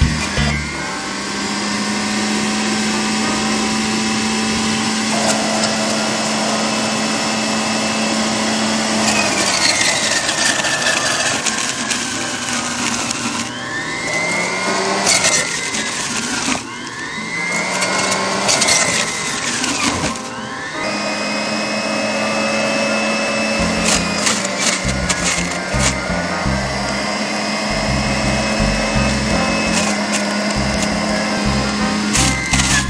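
Electric centrifugal juicer running with a steady motor whine. Several times in the middle its pitch sags and climbs back as produce is pushed through and the motor takes the load.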